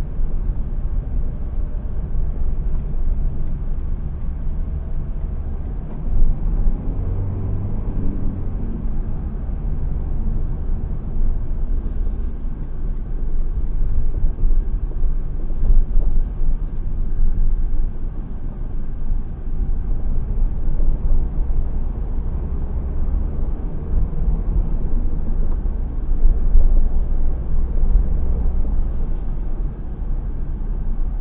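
Low engine and road rumble inside a car's cabin as it drives, with the engine note rising briefly about seven seconds in.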